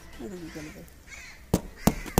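A crow cawing in the background over faint distant voices, with two sharp clicks near the end.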